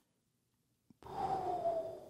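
A man acting out a deep breath: one long audible sigh with a faint falling tone, starting about a second in after a moment of silence.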